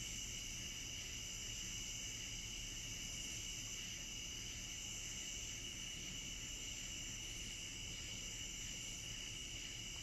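Steady chorus of crickets, an even high-pitched trill.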